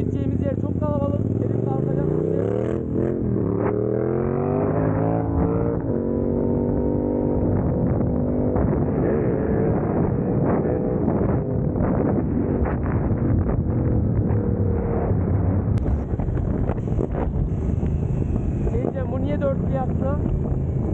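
Motorcycle engine pulling away and accelerating, its pitch rising through the gears with a shift about three seconds in, then running at a steady cruising speed.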